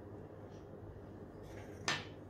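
Faint handling sounds of a child cutting rolled biscuit dough with a metal cutter on a worktop, then one sharp click near the end as the cutter knocks the surface, over a low steady room hum.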